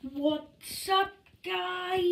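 A boy's voice in a sing-song vocalizing with no clear words: two short phrases, then one long held note near the end.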